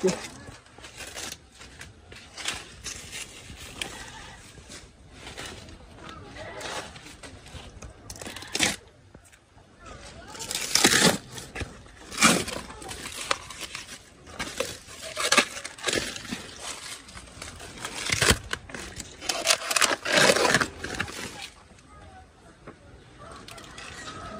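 Dry, fibrous sheaths being stripped from a banana plant's stem: a series of ripping and crackling tears, the loudest ones in the second half.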